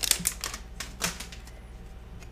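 A few light clicks and ticks of a small stack of glossy trading cards being handled in the hand, the loudest about a second in.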